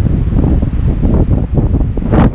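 Strong wind buffeting the camera's microphone: a loud, gusting rumble that rises and falls irregularly.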